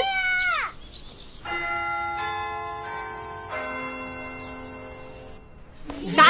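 School chime ringing a few bell notes one after another, each note ringing on under the next and slowly fading, the bell that marks the start of class.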